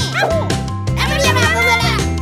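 Cartoon character's wordless voice over background music: a short exclamation, then a longer drawn-out call about a second in.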